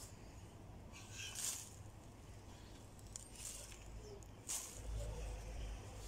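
Faint, brief rustles of plastic-gloved hands working cow manure into plastic pots, a few separate rustles, with a low rumble near the end.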